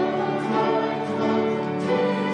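Congregation singing a hymn together, accompanied by acoustic guitar.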